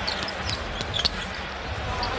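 A basketball dribbled on a hardwood court: a few sharp bounces over a steady low rumble of arena crowd noise.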